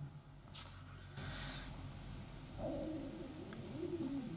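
A soft breath about a second in, then a faint, low, gurgling stomach rumble over the last second and a half.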